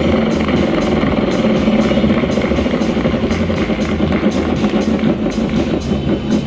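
Bonus wheel of an IGT Wheel of Fortune slot machine spinning, with a steady ticking about four times a second over the machine's loud music.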